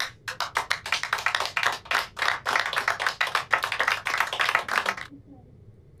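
A small group of people applauding: quick, irregular hand claps that stop suddenly about five seconds in.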